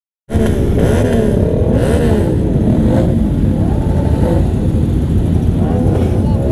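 Many motorcycle engines running together, a dense steady rumble with several engines revving so that pitches rise and fall over it.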